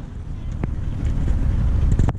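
Wind buffeting the camera's microphone, a steady low rumble, with one brief click about two-thirds of a second in.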